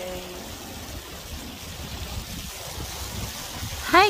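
Steady outdoor background noise: an even hiss with a low rumble underneath, without any distinct events.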